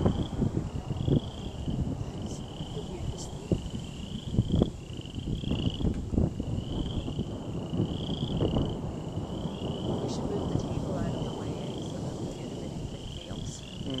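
Frogs calling in short rising trills, about one a second, over a continuous low rumble of rolling thunder and wind on the microphone.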